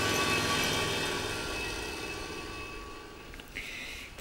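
Road roller engine running steadily at a worksite with fresh asphalt, gradually fading away.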